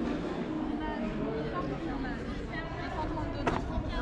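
Background chatter of many visitors' voices overlapping, with no single speaker standing out, and one sharp click about three and a half seconds in.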